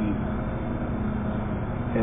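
Steady background hum and hiss, with a low droning tone, in a pause between words.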